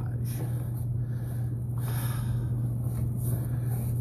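A sewer inspection camera's push cable being pulled back out of the line, a rustling, scraping noise over a steady low electrical hum.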